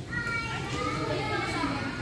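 Background chatter of several high-pitched voices talking and calling out, carrying through a large indoor sports hall.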